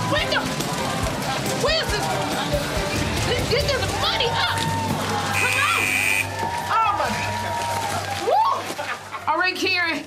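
Upbeat game-show music under excited shrieks and whoops from two women in a money booth, over the rushing air of the booth's blower that whirls the bills. A short electronic tone sounds about five and a half seconds in, and the cries grow louder near the end as the countdown runs out.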